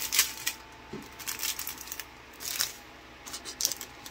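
Small clear plastic packets of diamond-painting drills crinkling in short bursts, about four times, as they are handled and set down.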